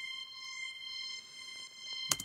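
High string patch from a Roland JV-1010 synth module holding one steady high note.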